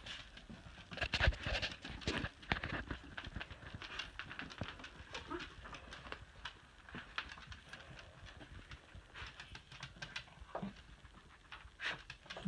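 A small dog's claws clicking and pattering faintly on a hard floor as it moves about, in light, irregular taps.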